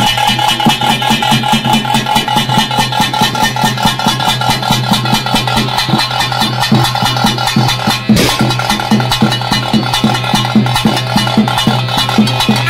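Traditional Tulu daiva kola ritual music accompanying the dance: quick, evenly spaced drumbeats over a steady held drone. A single sharp hit stands out about eight seconds in.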